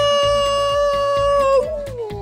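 A woman's voice holding one long, high, excited vocal cry, steady in pitch and dipping slightly near the end, over upbeat children's background music with a steady beat.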